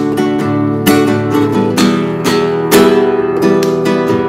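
Nylon-string classical guitar strummed in a basic 4/4 ballad pattern of down and up strokes, cycling through the chords G, D, Em and C. The chord changes about halfway through.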